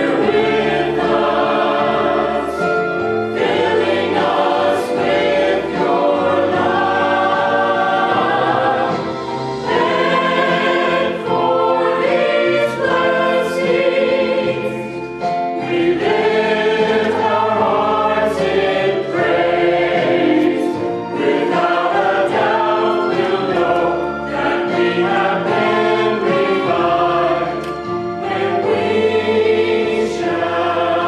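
Mixed church choir of men and women singing a sacred piece together, in sustained phrases with short breaks between them.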